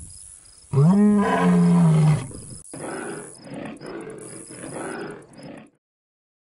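A deep animal roar about a second in, one long call that rises and then falls in pitch. It is followed by several quieter, rough growls that cut off shortly before the end.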